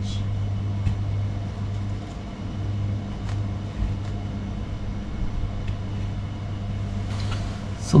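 Steady low electrical hum over a faint hiss, with a few faint clicks and knocks as the part is handled.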